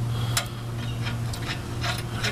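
A few sharp, scattered clicks and taps of hand tools and metal parts at a drive shaft's slip-joint clamp under a Jeep, over a steady low hum.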